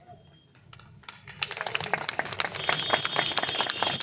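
A crowd clapping, starting about a second in and building into steady applause.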